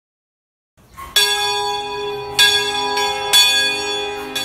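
A deep bell struck three times, starting about a second in, roughly a second apart, each stroke ringing on into the next.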